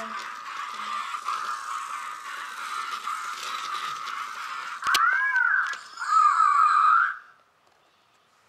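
Novie interactive robot toy whirring steadily as it moves on the floor. About five seconds in comes a sharp click, then a few electronic chirps from the robot, each rising then falling in pitch. The sound stops about a second before the end.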